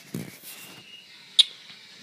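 Handling noise as a sneaker is set on a cardboard shoebox: a short rustle, then a single sharp tap about one and a half seconds in.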